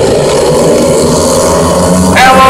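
Several speedway motorcycles racing on the dirt track, their single-cylinder engines running at full throttle in a steady, loud din as the pack closes in.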